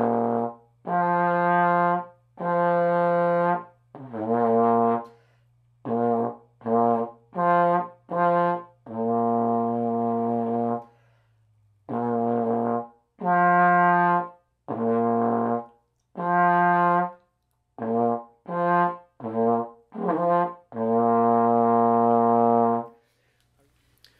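Trombone playing a warm-up of separately tongued notes on low B♭, D and F with no slide movement, in two phrases of short notes that each end on a long held low B♭.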